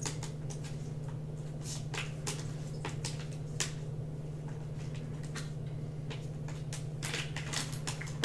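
Scattered light clicks and taps of trading cards and plastic card holders being handled and sorted, over a steady low electrical hum.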